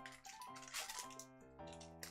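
Foil Pokémon booster pack wrapper crinkling and tearing open by hand, in a few short rustling bursts, over quiet background music.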